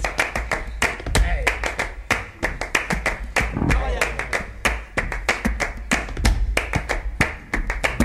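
Hands clapping, sharp claps several a second at an uneven pace, with voices underneath.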